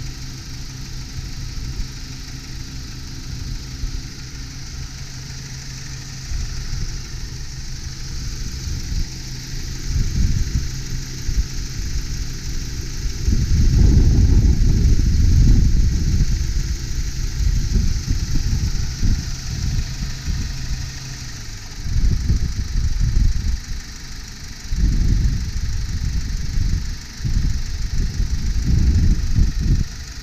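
Honda Del Sol's four-cylinder engine idling steadily under the open hood, running smoothly. Louder, irregular low rumbling comes and goes, most strongly about halfway through and over the last several seconds.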